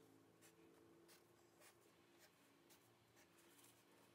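Very faint strokes of a felt-tip marker drawing short lines on paper, about two strokes a second, over a faint steady hum.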